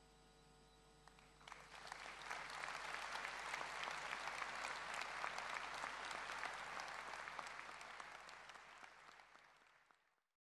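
Audience applause that starts about a second and a half in, builds, holds and fades away near the end.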